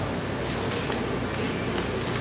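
Steady room noise of a large hall, with a few faint, brief high squeaks and clicks scattered through it.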